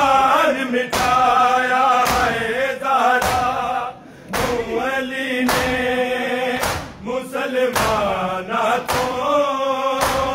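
A large group of men chanting a noha in unison, with the sharp slaps of hands striking bare chests (matam) coming roughly once a second in time with the chant.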